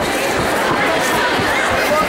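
Crowd of spectators talking, many voices overlapping at a steady level with no single voice standing out.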